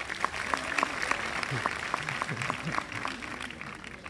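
Audience applauding, a dense patter of many hands clapping that tapers off near the end.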